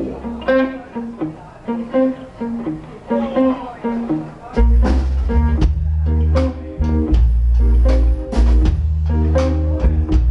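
A live blues band playing. An electric guitar plays a sparse lick of single notes on its own, then about four and a half seconds in the bass guitar and drums come back in with cymbal hits and the full band plays on.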